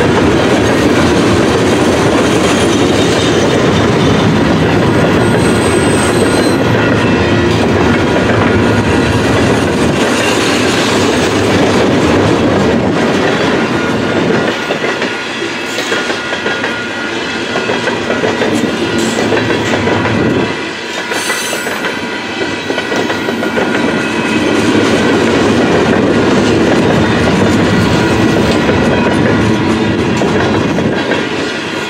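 Covered coil cars of a heavy 100-car freight train rolling past close by: a steady loud noise of steel wheels running on the rails. It eases off for a few seconds twice, around the middle.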